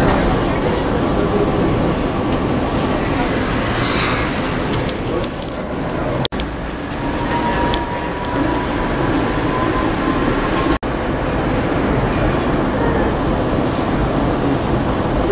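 Inside a moving tram: a steady rumble of wheels on the rails and running gear. A faint steady whine comes in about halfway through, and the sound cuts out for an instant twice.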